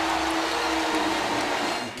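Arena crowd cheering after a made three-pointer by the home team, a steady roar with one long held voice note in it that fades out near the end.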